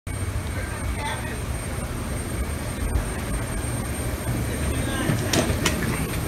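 Steady low rumble and hiss of the ambience at an airliner's boarding door, with faint voices and two sharp clicks just after five seconds in.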